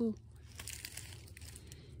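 Dry fallen leaves and grass rustling and crackling softly for about a second.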